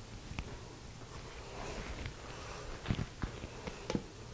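Quiet room tone with a few soft clicks, the sharpest just before the end.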